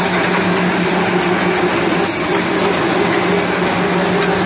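XY-GU-27 semi-automatic napkin tissue plastic bag packing machine running with a steady mechanical hum and clatter. There is a brief high squeak, falling in pitch, about two seconds in.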